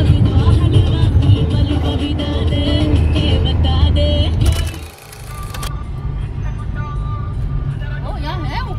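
Road and engine noise inside a moving car's cabin: a heavy low rumble with music and voices over it. About five seconds in it drops to a quieter, steady rumble.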